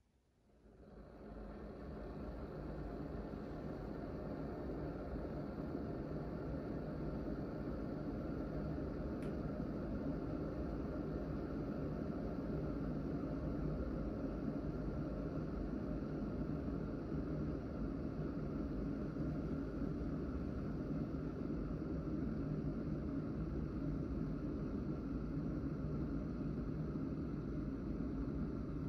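Cosori electric glass kettle heating water: a steady rushing hiss that comes up over the first two seconds, then holds.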